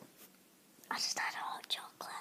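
A girl whispering a few breathy words with small mouth clicks, starting about a second in after a brief quiet moment.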